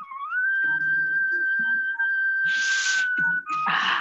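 A steady high whistle-like tone that glides up at the start, then holds one pitch for about three seconds, with a short hiss near the end.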